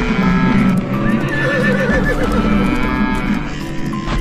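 Horse whinnying, with one long wavering whinny starting about a second in, over background music.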